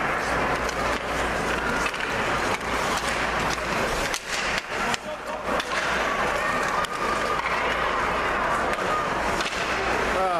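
Ice hockey play in a rink: skate blades scraping the ice and sticks clicking on the puck as sharp irregular clicks over a steady arena hubbub.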